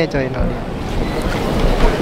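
Wind buffeting the camera microphone: a loud, low, rumbling noise that sets in about half a second in, after a voice trails off.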